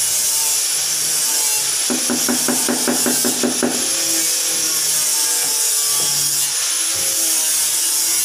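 A burst of rapid light hammer taps, about eight a second for nearly two seconds, over a loud steady hiss that runs throughout.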